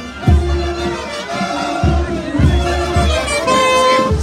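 Live parade band music: a drum keeping the beat under a held melody from high instruments, with crowd voices mixed in.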